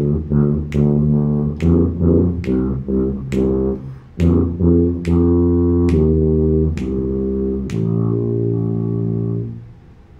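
Tuba played loudly through a short melody in B-flat major: quick pairs of eighth notes, then longer quarter notes, ending on a held low half note that stops just before the end. A sharp click sounds on each beat, a little under one a second.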